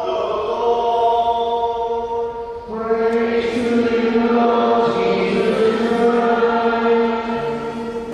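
Choir singing a slow, chant-like hymn in long held notes, with a short break about two and a half seconds in before the singing comes back fuller.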